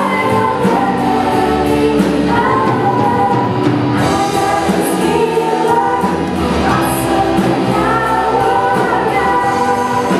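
A choir singing a worship song with musical accompaniment.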